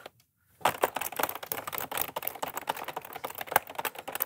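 Fast typing on a computer keyboard: many rapid, irregular keystroke clicks, starting about half a second in.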